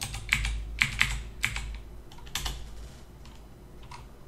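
Typing on a computer keyboard: a quick run of keystrokes in the first second and a half, a couple more about two and a half seconds in, then only faint scattered taps.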